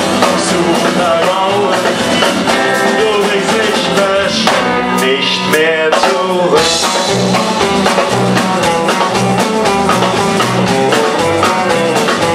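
Live indie rock band playing with electric guitars, bass and drums. About halfway the low end drops away briefly under a quick run of notes, then the full band comes back in.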